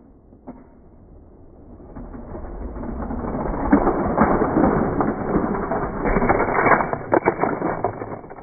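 Battery-powered Trackmaster toy train running along plastic track, a clattering rumble with many small clicks that grows louder over the first few seconds and eases off near the end.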